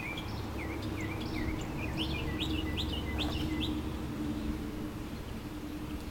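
A bird chirping outdoors: a run of short, quick chirps that come faster and closer together around the middle, then stop. A steady low hum runs underneath.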